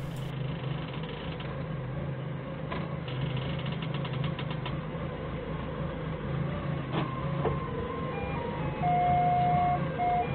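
Forklift engine running steadily, with a couple of knocks and a brief rattle. In the last two seconds a string of steady electronic tones at changing pitches comes in.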